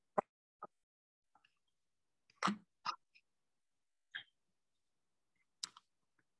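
About six brief clicks and knocks, scattered and separate, the loudest about two and a half seconds in, with dead silence between them as though gated by a video call's noise suppression.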